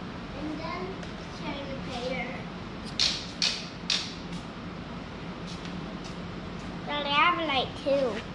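A young child talking in short bursts, at the start and again near the end, over a steady low hum. Three short, sharp hissy clicks come just past the middle.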